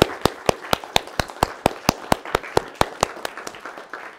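Applause from a roomful of guests, with one person's loud claps close by at about four to five a second; the close claps stop near the end and the applause dies away.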